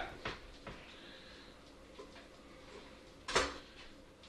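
A few faint taps of a chef's knife on a wooden end-grain cutting board as cooked potatoes are cut, then one sharper knock with a brief high metallic ring about three seconds in as the knife meets the board.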